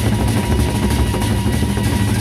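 Gendang beleq ensemble playing: large Sasak barrel drums beaten with sticks in a dense, fast roll, over clashing cymbals and a steady high ringing tone.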